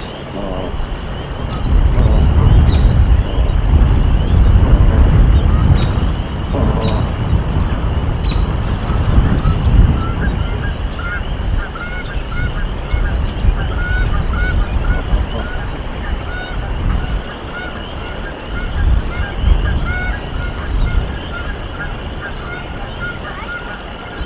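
Canada goose at the nest giving a few short, soft honks, with a heavy low rumbling noise through the first ten seconds or so. From about ten seconds in comes a long run of small repeated peeps, typical of newly hatched goslings beneath the brooding goose.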